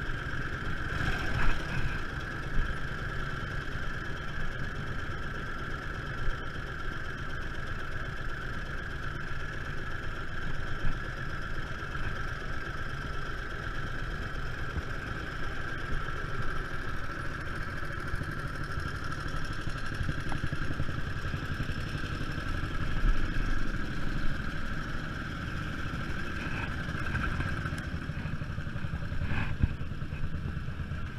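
Indian Sport Scout's flathead V-twin idling steadily, with other motorcycles running close by.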